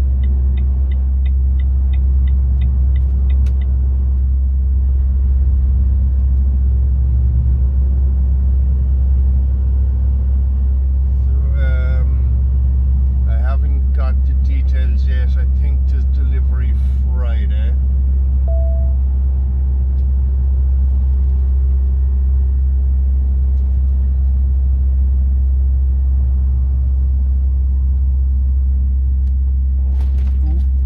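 Steady low engine drone inside a lorry cab on the move, with a turn signal ticking rapidly for the first few seconds.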